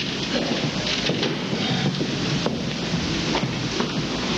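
Footsteps and shuffling of actors moving about a stage, with scattered irregular knocks over a steady noisy rush.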